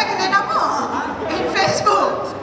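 Speech only: performers talking over stage microphones.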